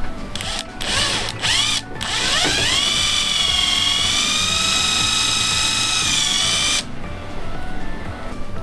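Cordless drill-driver driving a screw into the dead wood of a shimpaku juniper. A few short spins of the motor come first, then one long run whose whine rises and then holds steady for about four and a half seconds before stopping abruptly.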